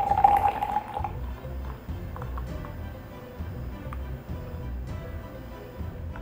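Hot water poured from a kettle into an Aeropress, the filling chamber giving a steady tone that rises slightly and stops about a second in. Background music with a regular low beat follows.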